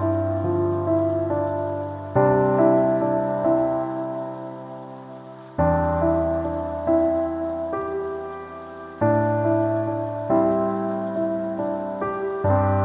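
Slow, gentle solo piano music: a low chord struck about every three to four seconds, with soft melody notes over it, each note dying away. A steady hiss of rain runs beneath it.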